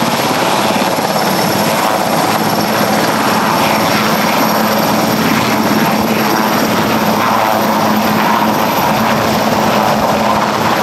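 Marine One, a Sikorsky VH-3D Sea King helicopter, running on the ground with its main rotor turning and its turbines whining, just before lift-off. The sound is loud and steady, with a thin high whine over it.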